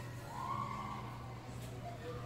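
A steady low electrical-sounding hum, with a faint, muffled voice in the first second.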